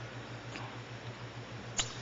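Quiet room tone with a steady low hum, a faint tick about half a second in and a short sharp click near the end.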